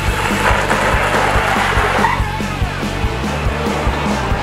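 Holden VX Commodore sedan pulling out and accelerating away, its engine and tyre noise rising then fading after about two and a half seconds, under background music with a steady beat.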